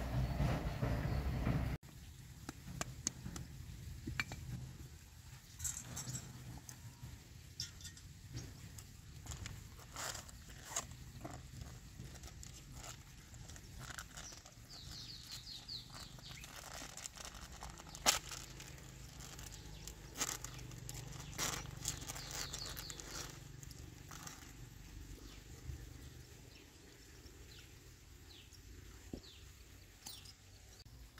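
Light clicks and clinks of small metal motorbike drum-brake parts being handled and wiped clean, coming irregularly, with one sharper click partway through.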